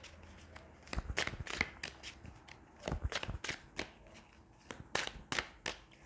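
A tarot deck being shuffled by hand: quick clusters of soft card clicks in three bursts about two seconds apart.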